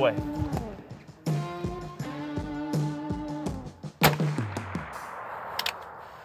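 A single rifle shot from an antique single-shot, hammer-fired military rifle about four seconds in, a sharp crack followed by an echo that dies away over about two seconds. Background music plays underneath before the shot.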